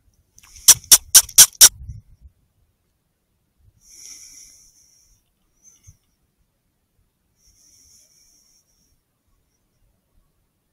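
Five quick, loud squeaks, about four a second, made by the hunter to call a fox in by imitating a small animal in distress. Two fainter, drawn-out high sounds follow, around four and eight seconds in.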